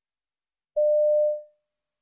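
A single electronic beep: a steady mid-pitched tone that starts about a second in, holds for about half a second and then fades. It is the signal tone that marks the start of each recorded extract in the OET listening test.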